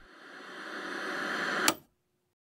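A hiss of static-like noise swelling steadily louder, then ending with a sharp click.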